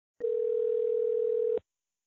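Telephone ringback tone heard on the line while a call is being placed: one steady tone lasting about a second and a half that starts and stops abruptly.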